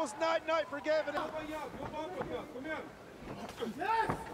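Quiet speech throughout, with no other distinct sound standing out.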